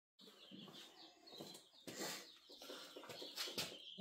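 Faint bird chirps with a few soft knocks.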